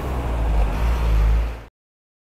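A vehicle engine idling: a low, steady rumble that cuts off suddenly near the end.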